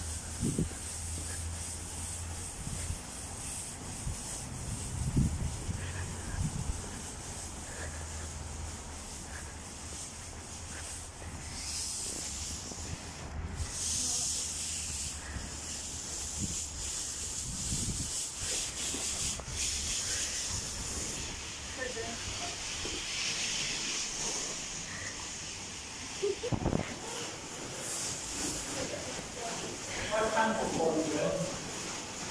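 Rustling and rubbing of an inflatable dinosaur costume's fabric as the wearer walks, over a steady hiss, with a few dull thumps.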